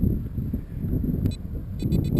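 Irregular low rumble of wind buffeting the microphone as the foam-board RC plane is swung and hand-launched. A click and a rapid string of short high-pitched beeps come near the end.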